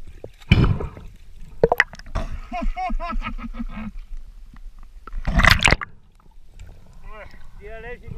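A person at the water's surface laughing in quick repeated bursts, with two loud rushing blasts of breath or water about half a second in and about five seconds in.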